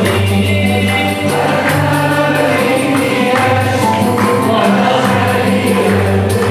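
Andalusian ensemble playing live: violins bowed upright on the knee, cello, oud and piano, with a tambourine keeping a steady beat and voices singing together over a held low bass.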